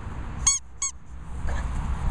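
Squeaky dog toy squeaked twice in quick succession, two short high squeaks about a third of a second apart.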